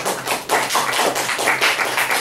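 An audience applauding: many separate hand claps overlapping irregularly.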